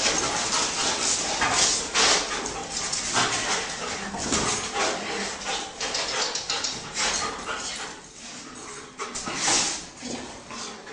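A dog barking and whining in repeated short bursts.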